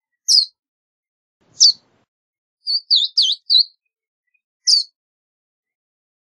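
Verdin giving short, high chip calls spaced about a second apart, with a quick run of four notes about halfway through.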